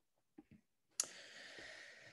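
Faint mouth clicks, then a sharp lip smack about a second in followed by a quiet in-breath lasting about a second.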